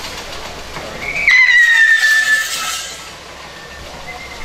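A loud whistle about a second in: one long note that slides slowly down in pitch over about a second, over the noise of a crowd.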